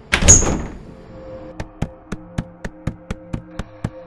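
Film soundtrack: a sudden hard hit just after the start, then a steady quick ticking over a low held drone, a suspense cue.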